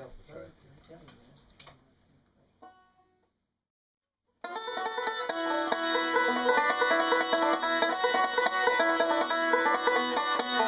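Faint talk, then after a brief dead gap bluegrass banjo picking on a resonator banjo starts suddenly about four and a half seconds in, and runs on at full level with many quick notes over lower held tones.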